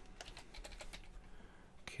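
Faint typing on a computer keyboard: a short run of keystrokes, mostly in the first second.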